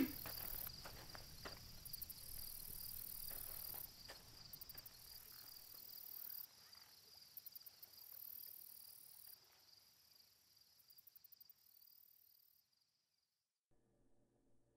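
Faint night ambience of crickets and other insects chirping: a steady high trill with recurring bursts of rapid chirping, fading out about thirteen seconds in.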